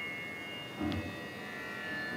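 A harmonium holding a soft, steady drone of high reed tones, with a short "uh" from a man about a second in.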